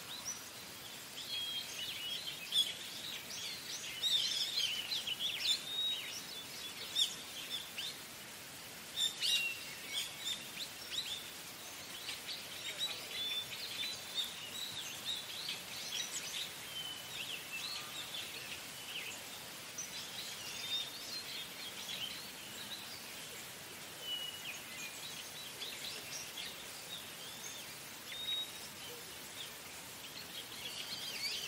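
Small birds chirping, with short high calls scattered throughout over a steady background hiss.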